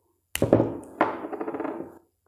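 Adhesive tape being pulled off its roll and wrapped around a battery pack's connector to cover its contacts: two pulls, each starting sharply and trailing off in a fast crackle.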